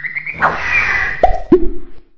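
Cartoon-style sound effects for an animated logo intro: a quick rising run of short tones and a swish, then two loud pops, each dropping sharply in pitch, in quick succession near the end.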